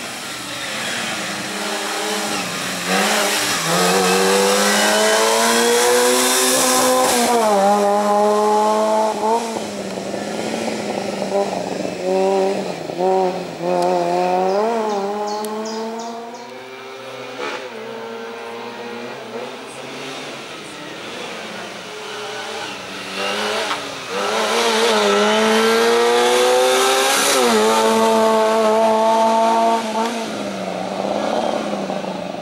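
Small four-cylinder engine of a Fiat Seicento race car weaving through a cone slalom, revving up hard and dropping back again and again as the driver lifts and changes gear. It is loudest in two long stretches, a few seconds in and again near the end.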